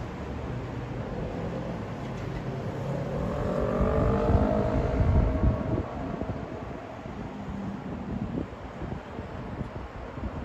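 Steady city traffic rumble, with one vehicle passing that swells to its loudest about four to five seconds in, a pitched whine sliding slightly down as it goes by, then fades back into the traffic.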